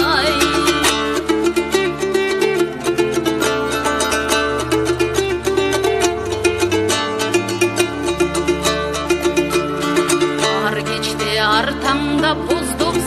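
Music: a fast passage of plucked string instruments over a steady bass line. A sung note with a strong vibrato ends just after the start, and singing comes back near the end.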